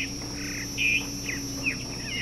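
Wild birds chirping, with many short, sliding calls, the loudest about a second in, over a steady high drone of insects.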